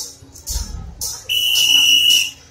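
Procession percussion: cymbal crashes, some with drum beats, sounding every half second or so, then a shrill, steady high tone held for about a second from just past the middle.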